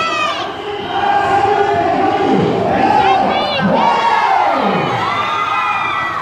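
Crowd cheering and shouting, many voices yelling at once without a break.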